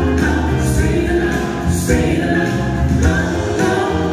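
Live pop ballad sung in harmony by a woman and two men on handheld microphones through a PA, over amplified accompaniment with sustained low bass notes.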